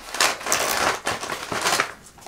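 Packing paper rustling as hands rummage inside a patent clutch bag and pull out its chain strap, in several louder surges.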